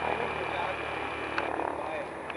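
Steady drone of a light aircraft's engine running somewhere on the airfield, with a thin high whine held over it, under faint voices.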